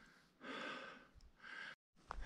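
A man breathing hard: a longer breath about half a second in and a shorter one near the end, followed by a brief dropout in the sound.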